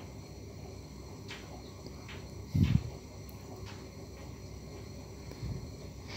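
Faint handling sounds as fingers tie wool yarn and nylon line onto a steel fishing hook: a few soft scattered clicks over low background noise, with one brief low sound a little before halfway.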